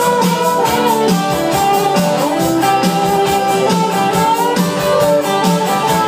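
Live band playing an instrumental passage: electric guitar lines with held, bending notes over a drum kit keeping a steady cymbal beat.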